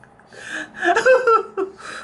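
A person gasping and laughing in breathy, pitch-bending bursts, starting about half a second in.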